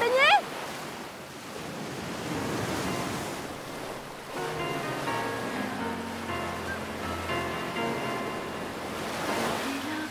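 Sea surf washing onto a beach, with a brief high rising squeal from a person at the very start. Soft music with held notes comes in about four seconds in and continues under the surf.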